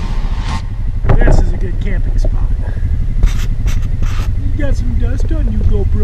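ATV engine idling with a steady low rumble, with a short louder sound about a second in. From about two seconds in, a man's voice makes wordless sounds close by.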